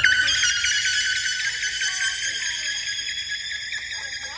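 A killer whale's call: one long, high, buzzy tone that starts suddenly, rises slightly at first and then holds for about four seconds, fading a little near the end.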